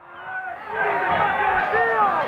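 Televised football match sound: a brief dip almost to silence at an edit cut, then a voice over stadium crowd noise.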